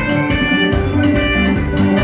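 Loud live band music: a steady drum beat and bass under bright, quickly repeating melodic notes.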